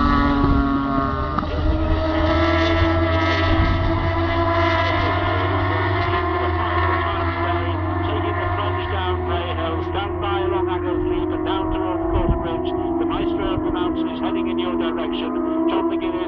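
Superstock racing motorcycles at full throttle, a steady high engine note that holds with only slow shifts in pitch as the bikes run on along the mountain road.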